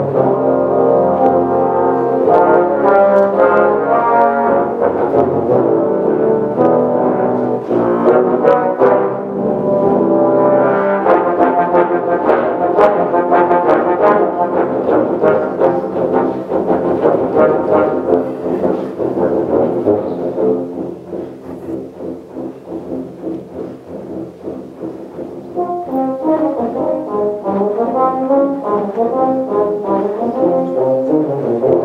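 Tuba and euphonium ensemble playing, led by a conductor: a loud, full passage for about twenty seconds, then a softer stretch, then quicker, detached notes that grow louder again near the end.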